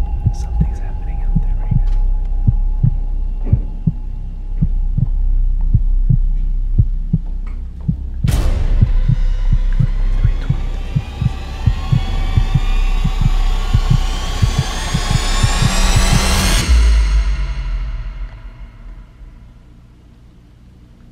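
Heartbeat sound effect over a low drone: steady low thumps throughout, joined about eight seconds in by a rising sweep that climbs for about eight seconds and cuts off suddenly, after which the sound fades near the end.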